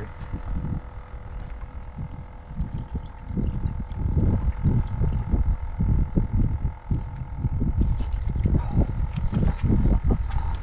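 Wind buffeting the microphone in uneven gusts, heavier in the second half, over a faint steady hum.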